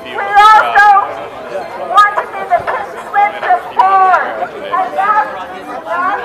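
Speech only: people in a crowd talking and chattering, with voices overlapping.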